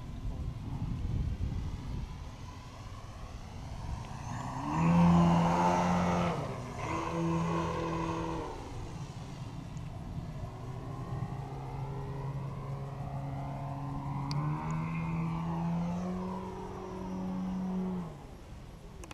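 Engine of a large radio-controlled Extra 330 aerobatic plane flying overhead. It is loudest as it passes close about five seconds in, its pitch shifting with the throttle, and it rises in pitch near the end.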